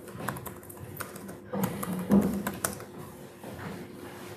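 Typing on a computer keyboard: irregular key clicks as a terminal command is entered and run. A brief low sound about two seconds in.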